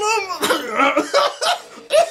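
A man laughing hard and breaking into coughing, in a string of short bursts, the loudest a sharp cough near the end.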